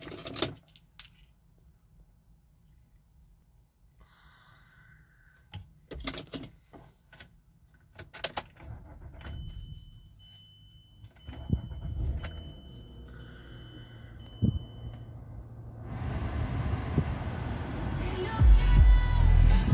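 Mazda CX-9 being started: clicks and rattles of the key and ignition, then a steady high warning tone while the dash lights are on. About eleven seconds in the engine cranks and catches, settling into a low, steady idle, with a broader noise rising near the end.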